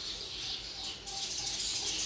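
Small birds chirping steadily in the background, a dense run of high, rapid chirps.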